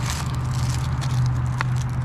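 Small paper packets being folded and twisted by hand, with light crinkling and crackling over a steady low hum.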